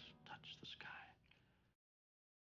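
A person's faint whispered voice, a brief few syllables, cutting off suddenly about three-quarters of the way in.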